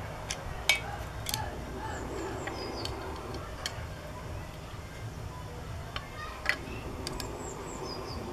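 Scattered sharp metallic clicks and clinks of small tools and brass screws being fitted to a puller plate on an engine's Dynastart hub, the sharpest about a second in and again near six and a half seconds. Small birds chirp briefly in the background twice.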